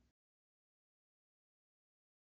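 Near silence: the sound track is dead quiet, with only a faint brief blip at the very start.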